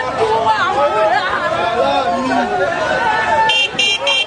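Crowd of people talking at once, many voices chattering over each other with no single speaker standing out. Near the end, a few short high-pitched bursts cut through the voices.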